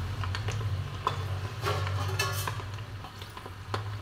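Peanuts frying in hot oil in an iron kadhai, crackling and ticking as they roast, while a perforated steel skimmer stirs them and clinks and scrapes against the pan; a steady low hum runs underneath.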